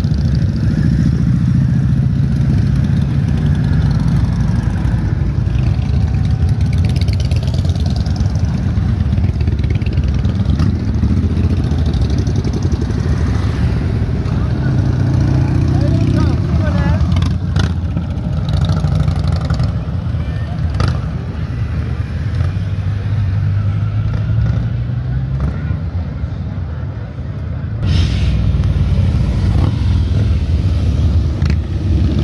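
Harley-Davidson V-twin motorcycles riding past at low speed one after another, their engines rumbling steadily.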